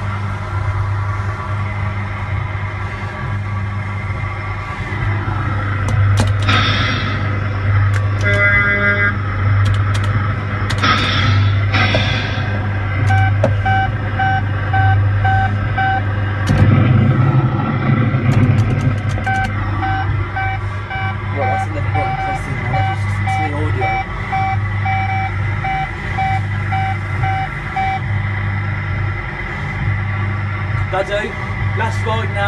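A coin-operated children's ride vehicle playing its electronic soundtrack through its speaker: a steady pulsing hum with music and vehicle sound effects, and a repeating reversing-alarm-style beep, about two a second, in two long runs in the middle and latter part.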